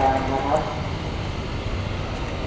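Large outdoor air-conditioning condenser units running: a steady low mechanical hum and fan rumble that carries on after a man's voice stops about half a second in.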